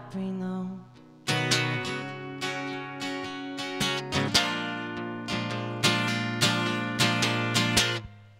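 Acoustic guitar strummed in a steady rhythm as an instrumental passage between sung lines. A held chord fades out about a second in, then the strumming picks up again.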